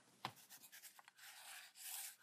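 Near silence: one faint click, then a faint high hiss with a few tiny ticks.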